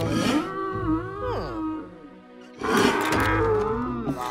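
Animated dream deer giving two drawn-out, wavering calls, the second louder, over a light cartoon music score.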